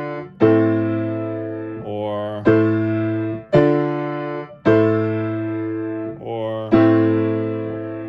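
Baldwin acoustic piano playing the minor one–four–one (i–iv–i) chord progression: block chords struck about a second apart in groups of three, each left to ring out, with the bass moving up a perfect fourth and back.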